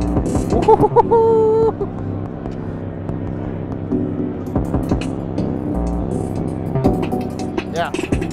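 Elektron Model:Samples groovebox playing an electronic beat. Its tracks run at different multiples of the tempo, so the hi-hats, kick and snare fall out of step with one another in a pattern that is really messed up. A short held synth note sounds about a second in, and a laugh comes near the end.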